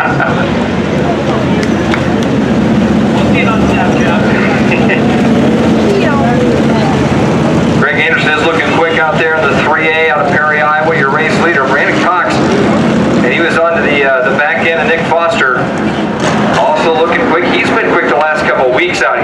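Hobby stock race cars' engines running around a dirt oval: a steady engine drone, with a man's voice talking over it from about eight seconds in.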